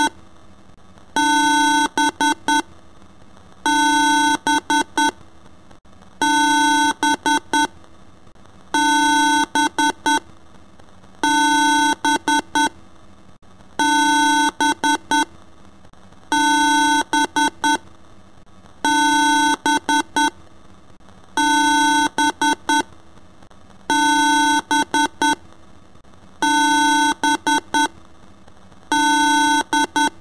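A synthesized electronic beep sound looping: a long buzzy tone followed by a few quick short beeps, the pattern repeating about every two and a half seconds.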